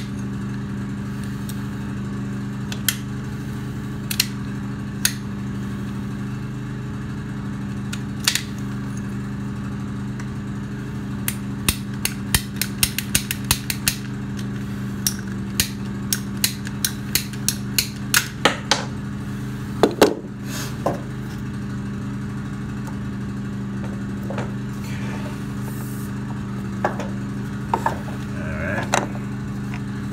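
Sharp clicks and snaps of hand-tool work on PEX water line as a piece is trimmed off. The clicks come in a quick run in the middle, with the loudest snap about twenty seconds in, over a steady low machine hum.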